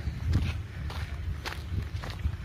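Footsteps of a person walking while filming, about two steps a second, over a low steady rumble.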